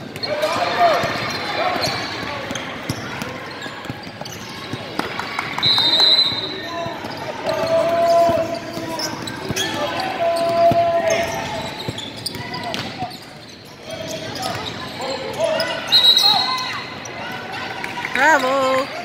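Basketball game on a hardwood gym floor: the ball dribbling, a couple of brief high sneaker squeaks, and players and spectators calling out across the large hall.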